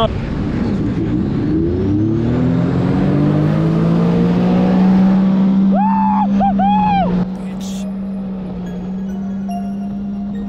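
Sea-Doo personal watercraft engine revving up as the throttle opens, its pitch rising over the first two seconds and then holding at high speed. About six seconds in come three short whoops. Just after seven seconds the sound drops somewhat quieter and the engine tone carries on steady.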